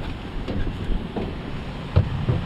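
Irregular low rumble of wind and handling noise on a hand-held microphone while moving into a truck cab, with a sharp thump at the very end.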